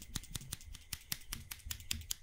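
Fingertips and nails tapping quickly on the body of a handheld studio microphone, heard close on the mic. It makes a rapid, irregular run of sharp clicks, about six a second.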